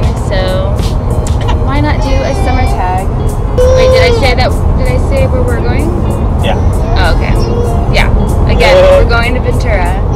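Steady road rumble inside a moving car, with music and a pitched voice rising and falling over it.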